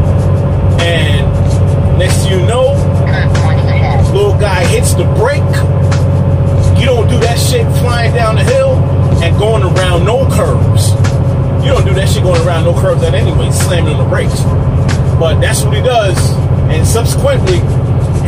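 Semi truck's diesel engine droning steadily in the cab on a downhill run, with a voice and background music over it.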